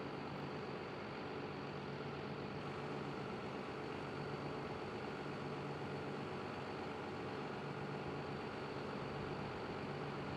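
John Deere 6630 tractor engine running at a steady, even note while it pulls a slurry dribble-bar applicator across the field.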